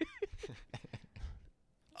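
Faint human voice sounds, a short laugh-like sound at the start, then scattered quiet murmurs that die away to silence near the end.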